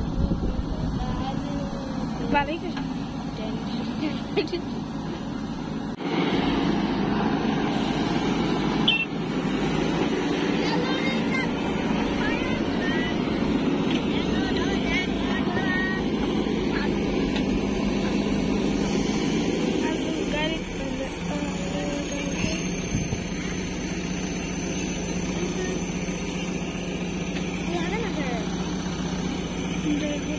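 JCB 3DX backhoe loader's diesel engine running steadily while its backhoe digs soil, getting louder about six seconds in.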